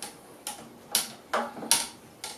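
A metal clamp working inside a tall cylinder of Red Bull, giving about four short, sharp clicks and taps over two seconds as it tries to press the power button of the submerged phone.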